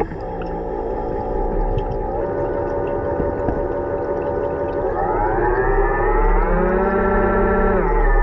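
An underwater whine from a diver's propulsion scooter motor. It holds steady, then climbs in pitch about five seconds in as the motor speeds up, and drops again near the end.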